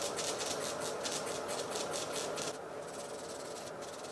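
Hand-squeezed bulb pump of a hair-fiber spray applicator puffing air in quick repeated squeezes, about five a second, as it sprays hair-building fibers. The puffs become sparser and fainter in the second half.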